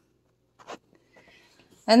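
Mostly near silence, with one faint click about two-thirds of a second in and faint soft rustling after it, before a woman's voice starts at the very end.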